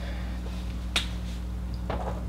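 Steady low hum of room and recording noise, with two sharp clicks: one about a second in and one near the end, as a marker comes to the whiteboard.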